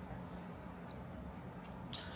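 Faint sips and swallows of tea from a mug, heard as a few soft clicks over a low, steady room hum.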